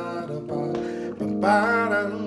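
Keyboard playing sustained gospel chords, with a man's voice wordlessly singing along over them, loudest about one and a half seconds in.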